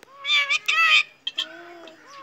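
Meow-like animal calls: two loud, strained cries in quick succession in the first second, then a fainter, lower drawn-out call.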